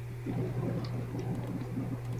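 A steady low hum, with faint, irregular low sounds over it from a fraction of a second in.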